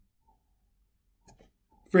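Near silence with a couple of faint clicks about a second and a half in; a man's voice starts right at the end.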